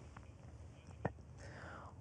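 Faint room tone with a few small mouth clicks, the clearest about a second in, and a soft breath near the end, just before a man starts speaking.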